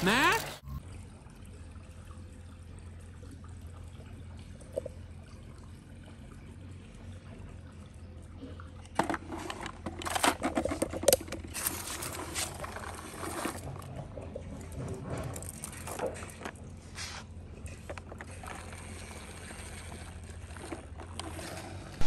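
A hard plastic toy truck being handled and moved on a tile floor. Scattered clicks and rattles start about nine seconds in, over a faint steady hum.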